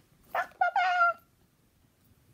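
A short, high-pitched, meow-like vocal call: a quick first note, then a longer held note that falls slightly in pitch as it ends.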